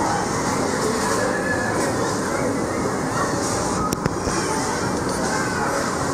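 Steady background din inside a busy store, with a single sharp click about four seconds in.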